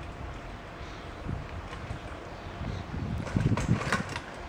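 Wind rumbling on the microphone outdoors. Near the end, a child's bicycle rolls in over the dirt track with a scattered crunching from its tyres.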